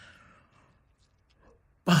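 A person's soft breathy sigh, fading out within the first half-second, then quiet room tone until a woman's voice comes in just before the end.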